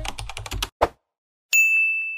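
Keyboard-typing sound effect, a quick run of clicks as on-screen text types out, then one louder click. About one and a half seconds in comes a notification-bell ding that rings on as a single high tone. These are a video end card's typing and subscribe-bell effects.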